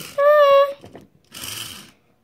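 A child's voice holding one short, high, steady note as a train sound effect, the loudest thing here, followed about a second later by a brief hiss.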